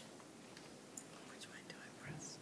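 Near-silent room with faint whispering and a few light clicks in the second half.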